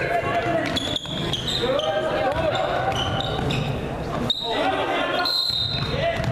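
Indoor basketball play on a hardwood court: a ball bouncing, with sharp knocks about one second in and just past four seconds. Short high squeaks run through it, along with voices calling out across the echoing gym.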